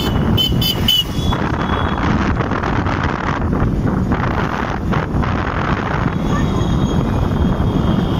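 Wind buffeting the microphone on a moving motorbike, mixed with the low rumble of the engine and tyres. A few short, high-pitched tones sound about half a second to a second in.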